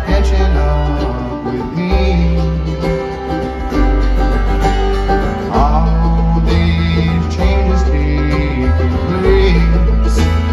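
Live bluegrass band playing: acoustic guitar, banjo, fiddle and upright bass, with deep bass notes changing every second or so under the plucked strings.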